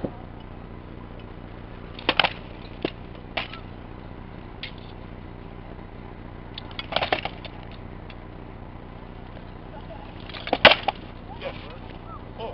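Rattan swords striking a shield and armour in armoured sparring: sharp knocks in short flurries about two seconds in and around seven seconds, with the loudest flurry near the end, over a steady background hum.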